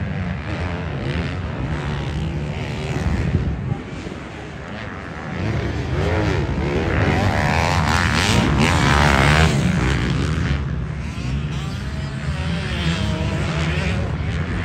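Motocross dirt bike engines racing on the track, revving up and down through the gears. Loudest from about six to ten seconds in.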